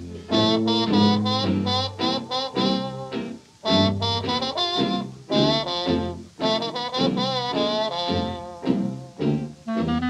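Early-1930s jazz dance band recording, horns playing short, quick phrases with vibrato over a steady bass line, with a brief gap between phrases a little before the middle.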